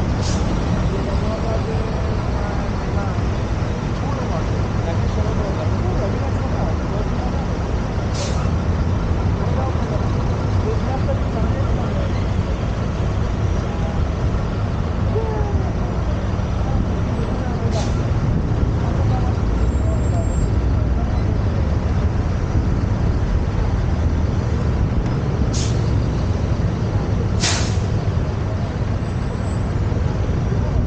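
Road traffic at a city intersection: a steady low rumble of motor vehicles, with five brief, sharp hisses or clicks spread through it.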